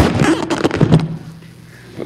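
A man speaking through a PA in a large hall for about a second, then breaking off into a short pause of quiet room tone.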